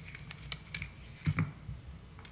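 Scattered light clicks and taps, the loudest a dull knock about a second and a quarter in, over a steady low hum.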